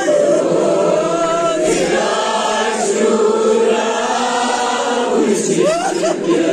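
A nowha, the Shia mourning lament for Muharram, chanted by a group of voices together, with a boy's voice amplified on a microphone; long, drawn-out sung lines that overlap.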